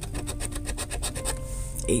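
A metal coin scraping the scratch-off coating from a lottery ticket in rapid, even rasping strokes.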